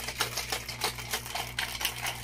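Ice cubes rattling in a cocktail shaker shaken hard by hand, a fast even rhythm of about six or seven knocks a second.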